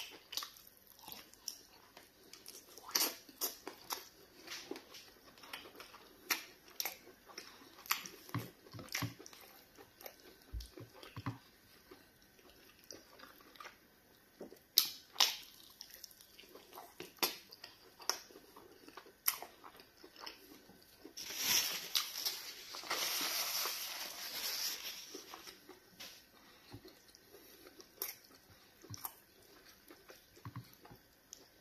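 Close-miked chewing and biting of soup-coated chicken and fish, with many short, sharp wet mouth clicks scattered throughout. About two-thirds of the way in, a louder stretch of continuous noise lasts about four seconds.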